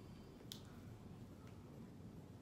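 Near silence: room tone, with one short faint click about half a second in and a fainter one about a second later.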